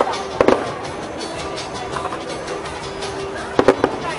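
Fireworks exploding in two quick clusters of sharp bangs, one about half a second in and another near the end, over a steady background of crowd noise.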